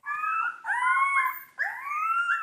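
Gene-edited dire wolf pups howling: a string of high, wavering howls that rise and fall, with a fresh rising howl starting about three-quarters of the way through.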